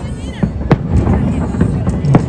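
Aerial firework shells bursting overhead: sharp bangs, one under a second in and one near the end.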